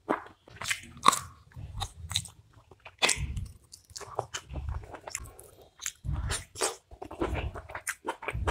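Close-miked chewing of a mouthful of spicy mutton curry and rice, with wet mouth clicks and crunching bites coming irregularly.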